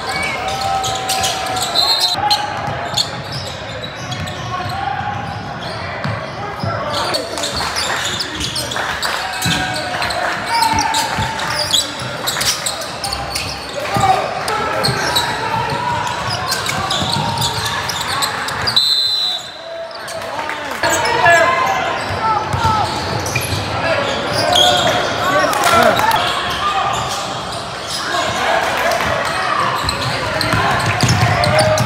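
A basketball bouncing on a hardwood gym floor amid many voices of players and spectators, all echoing in a large hall.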